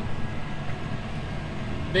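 John Deere 6155R tractor running steadily with its PTO-driven rotary topper cutting rushes, heard from inside the cab as a low, even drone.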